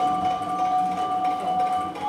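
Contemporary chamber ensemble holding two steady, sustained high notes.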